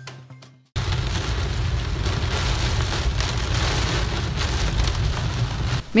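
Heavy downpour rain beating on a car's roof and windscreen, heard from inside the car as a dense, steady hiss. It starts suddenly under a second in, after faint news-intro music fades out.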